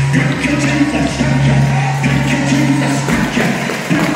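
Live gospel praise music: sustained low instrumental chords, with singing voices and congregational hand clapping in time.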